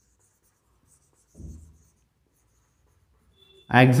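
Marker pen scratching faintly on a whiteboard in short strokes as words are written, with a brief low sound about a second and a half in.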